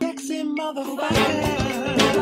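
Intro music starts: a sustained pitched note first, then a beat with bass comes in about a second in.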